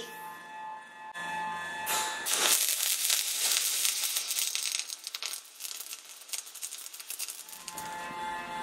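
MIG welding arc from an Oerlikon Citosteel 325C Pro running at about 274 A and 32 V on 15 mm thick steel: a dense, steady crackle that starts about two and a half seconds in and stops shortly before the end.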